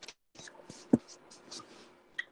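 Scratching and tapping like a pen writing, in several short strokes, with a sharper tap about a second in.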